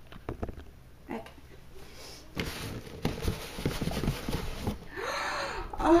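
Cardboard doll box being opened by hand: light knocks at first, then steady rustling and scraping of cardboard and packing paper from about two seconds in.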